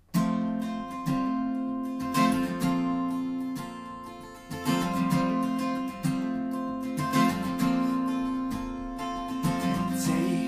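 Solo acoustic guitar with a capo, strummed chords of a song intro starting suddenly, with sharp accented strums about once a second over ringing chords.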